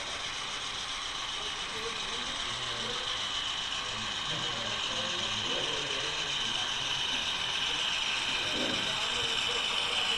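HO-scale model diesel locomotives running along the layout track toward the microphone: a steady mechanical whir of motors, gears and wheels on rail that grows gradually louder as they approach.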